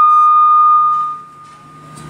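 Public-address microphone feedback: a single loud, steady high whistle that fades away about a second in, over a faint low hum.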